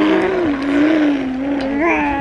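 A baby blowing one long buzzing raspberry through her pressed lips, a motor-like voiced hum that wavers slightly and lifts in pitch briefly near the end.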